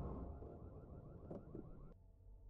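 Faint, fading horror-show score from the episode playing on the reaction stream: a low drone with a warbling tone that pulses about five times a second, a couple of soft clicks, then an abrupt cut just before the end.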